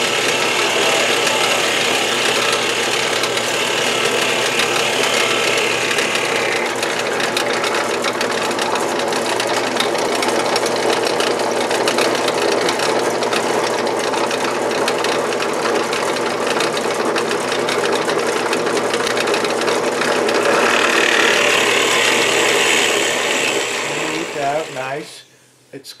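Benchtop drill press running steadily, its bit boring a hole into a wooden rocker, with a bright cutting noise that comes and goes. The motor cuts off near the end.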